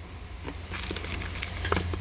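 Clear plastic bags around packed cables crinkling and crackling as a hand moves them, with a few sharper crackles near the end, over a steady low hum.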